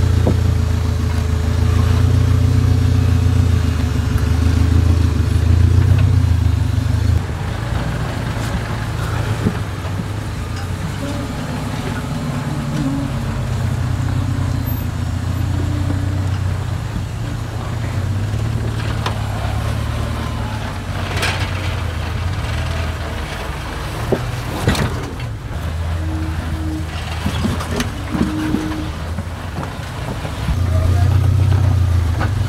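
Suzuki Samurai engines running at low revs as the rigs crawl over boulders, the low rumble swelling and easing with the throttle. A few sharp knocks in the second half.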